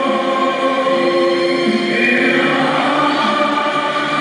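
A choir of voices singing together in long held notes.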